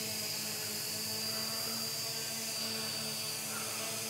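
Holybro X500 quadcopter hovering in GPS position-hold (loiter) mode: its four motors and propellers give a steady hum with a thin high whine above it.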